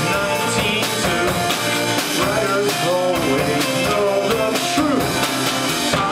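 Live indie pop band playing with two guitars over a steady drum-kit beat.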